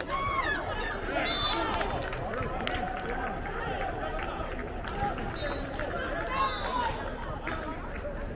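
Many overlapping, indistinct voices of youth soccer players and sideline spectators calling and shouting, some of them high children's voices, over a steady background murmur.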